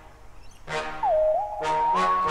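Background music: a chord struck about once a second that rings and fades, under a thin held melody line stepping between a few notes.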